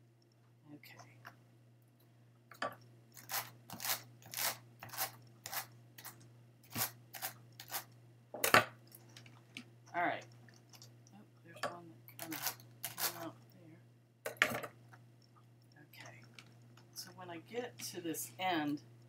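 Wool and textured fibers being dragged off a blending board's carding cloth and rolled onto two wooden dowels to make a large rolag: a string of short scratchy rasps, about one or two a second, with a sharper snap about halfway through.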